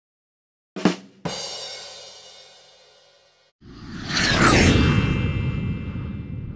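Intro sound effects: a short hit, then a metallic crash that rings and fades away over about two seconds. After a brief silence, a loud whoosh swells up and holds.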